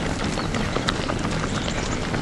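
Footsteps of many runners on an asphalt road as a pack passes close by, a quick irregular patter over a steady noisy background.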